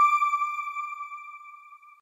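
A single high electronic chime tone, struck just before and ringing out, fading steadily until it dies away near the end. It is the logo sting of a news outro.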